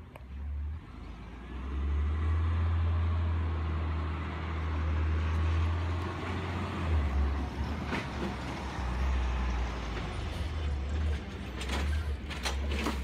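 Garbage truck's diesel engine running as the truck drives closer, a loud, steady low rumble that swells about two seconds in, with a few sharp clanks and rattles near the end.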